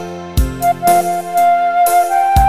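Minang pop arrangement played on a Roland keyboard with a phone's ORG arranger app: a drum beat with regular kick and cymbal strokes under sustained chords, and a bright, flute-like lead melody that comes in about two-thirds of a second in.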